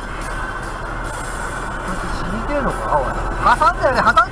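Steady engine and road noise from a truck on the move, heard from inside the cab. Over the last second and a half, a voice comes in, sliding up and down in pitch.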